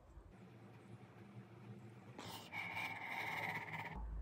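A woman gagging, a strained open-mouthed throat noise, as a cotton swab is rubbed over the back of her throat for a COVID-19 throat sample; the gag reflex is setting in. It starts about halfway through, after a quiet first half.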